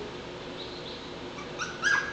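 Labrador Retriever puppy whimpering: two short high-pitched whines near the end, the first rising in pitch.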